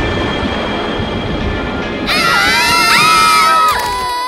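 A dramatic low rumble with music, then several cartoon voices scream together in shock for nearly two seconds, stopping just before the end.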